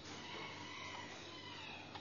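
Faint background hiss of a room recording in a pause between sentences, with no speech.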